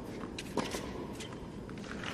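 Hushed arena during a tennis rally on a hard court: a low, steady background hush with a few short, sharp ticks from racket-on-ball strikes and players' shoes.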